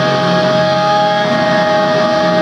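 Live hardcore band's electric guitars ringing with one steady held note, loud and unbroken.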